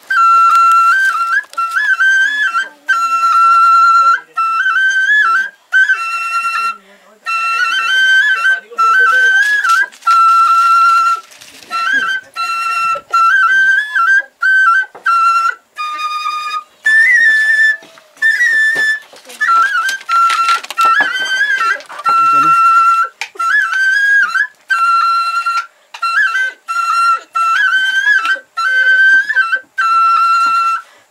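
Background music: a solo flute playing a slow melody in short phrases with brief pauses, hovering around one note with small turns and ornaments.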